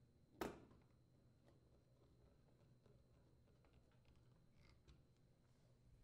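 Near silence, with one sharp click about half a second in and a few faint ticks after it: a Phillips screwdriver working the screws that mount the oven gas safety valve to the rear panel.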